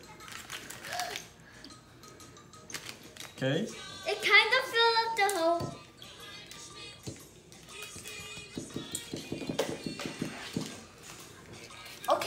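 A person's voice in a small room, with a drawn-out, sung-sounding phrase of gliding pitch from about three and a half to nearly six seconds in, and quieter voices and light clicks around it.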